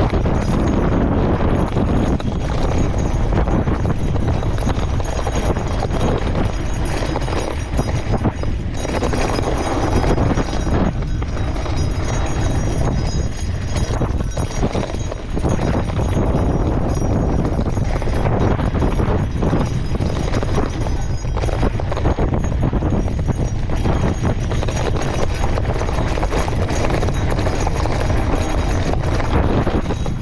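Gravel bike with 650b Maxxis Ardent and Pace tyres descending a loose, chunky dirt road: a continuous crunch and rumble of tyres over rock, with the bike rattling and clattering at every bump.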